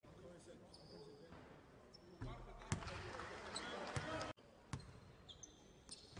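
Faint basketball game sound on a hardwood court: a few sharp ball bounces and short, high sneaker squeaks over a low murmur.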